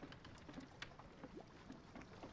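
Near silence: faint low ambience of an open wooden boat at sea, with a few small faint clicks.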